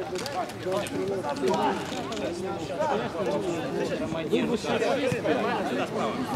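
Several men's voices talking and calling out at once, overlapping chatter with no single clear speaker.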